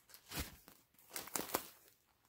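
Packaging crinkling as a bundled set of yarn skeins is handled, in short rustling bursts about half a second in and again around a second and a half.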